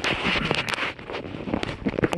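Wind rushing on the microphone, strongest in the first second, with a few sharp clicks and knocks as the plastic jar is handled on the metal table.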